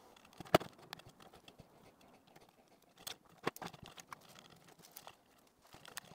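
Faint, scattered clicks and taps of a small screwdriver and screws on a plastic headset strap housing as the screws are backed out. The sharpest click comes about half a second in.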